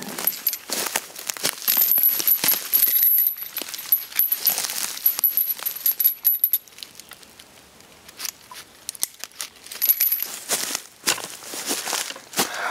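Metal rappel rings and a carabiner clinking and rattling on a hammock tree strap as it is handled and fastened around a tree trunk. There is a run of sharp clinks with a thin metallic ring, then a short lull in the middle before more clinking.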